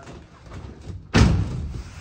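Roll-up tonneau cover's end bar snapping down into the grooves at the back of the bed rails: a single loud thud a little over a second in, with a short ringing tail and faint handling rustle before it.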